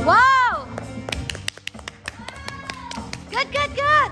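A karaoke song ends: the backing track stops and a loud voice swoops up and down in pitch for about half a second. Scattered hand claps follow, with short excited voices near the end.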